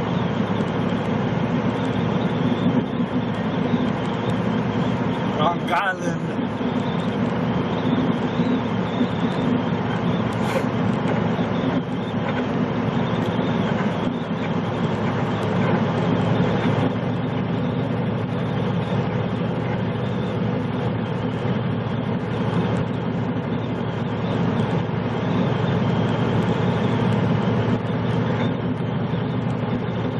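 Steady drone inside a big-rig truck cab cruising at highway speed: the diesel engine running under constant road and tyre noise. A brief rising higher-pitched sound cuts in about six seconds in.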